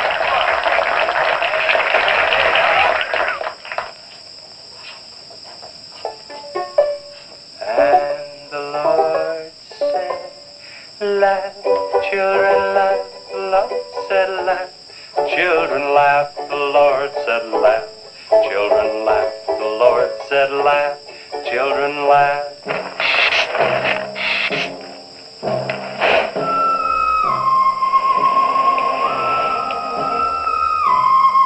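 A crowd clapping for about three seconds, then a young man singing a light song in short phrases. Near the end, eerie stepping tones of a theremin film score come in.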